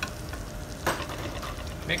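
Steady sizzle of food frying in a pan on a gas range, with one light clink of a metal spoon against a china plate about a second in.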